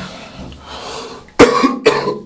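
A man coughing twice in quick succession, about a second and a half in.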